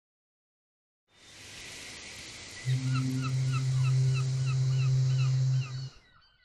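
A rushing sea-like noise fades in about a second in, then a deep, steady ship's horn blast sounds for about three seconds, the loudest part, with gulls giving quick repeated short cries over it; it all cuts off just before the end.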